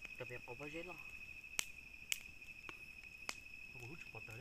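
An insect's steady high-pitched trill runs throughout, while a wood fire gives off sharp single crackles every half second to a second.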